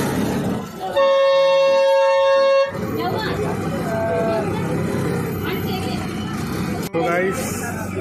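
Bus horn sounding one steady blast of about a second and a half, starting about a second in, loud and close, over background voices.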